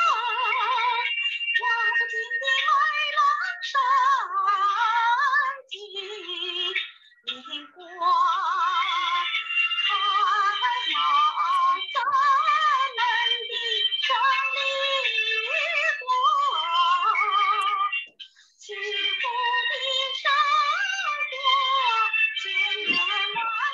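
A woman singing a song with vibrato over musical accompaniment, in phrases with short breaks between them, heard through a Zoom call's audio.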